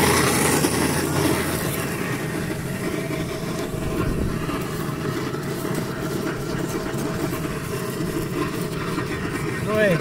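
An old vacuum cleaner running steadily with a constant whine, very noisy, as its nozzle sucks dirt and grass off a car's floor carpet.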